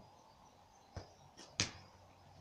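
A football being kicked: a faint knock about a second in, then a sharper, louder thud about half a second later.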